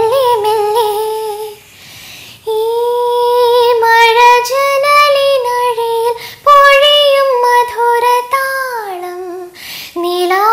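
A young woman singing solo without accompaniment, holding long sustained notes in phrases, with short breaths between them about two seconds in, around six and a half seconds and near the end.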